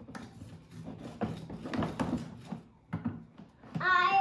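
Plastic toy bricks and a scrub brush being handled in plastic tubs on a wooden table, with scattered irregular knocks and rubbing. A child's voice starts near the end.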